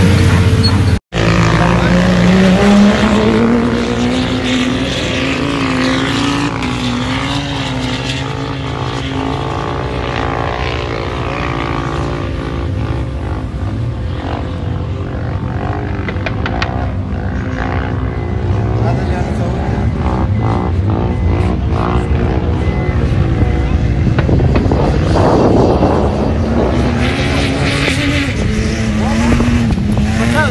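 Car engines revving hard, their pitch climbing and falling, with people's voices mixed in. The sound drops out for an instant about a second in, and an engine winds up again over the last few seconds.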